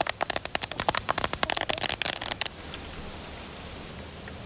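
Hot oil sizzling and spattering loudly in a frying pan around a whole pearl spot (karimeen) fish, with dense crackling. It cuts off suddenly about two and a half seconds in, leaving a steady low hiss.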